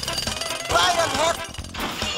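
Cartoon soundtrack from a trailer montage: a fast, even rattle, then just under a second in a short high-pitched cartoon voice, with music under it.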